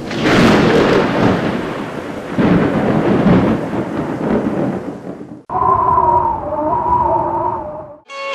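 A loud, thunder-like rumbling noise effect on a studio logo intro, swelling twice and then cutting off abruptly about five and a half seconds in. A thin, wavering held chord of a few tones follows it.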